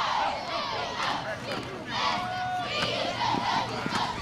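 Many voices shouting and yelling over one another, the sideline players and crowd calling out during a live football play, with one voice holding a call about halfway through.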